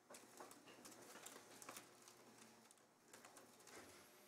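Near silence: quiet room tone in a council chamber, with a few faint clicks and rustles.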